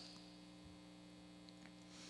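Near silence in a pause of speech, with a faint, steady electrical mains hum.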